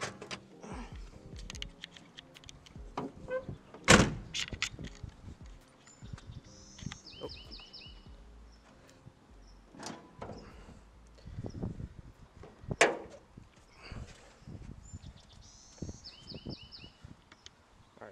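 Opening the hood of a Datsun 280ZX: the release under the dash is pulled and the hood unlatched and raised, with scattered clicks and knocks. The loudest thunk comes about four seconds in and another about thirteen seconds in.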